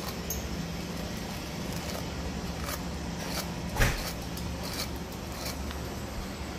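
Hairbrush being drawn through hair, a few soft, irregular strokes with one sharper knock about four seconds in, over a steady low hum from an electric fan.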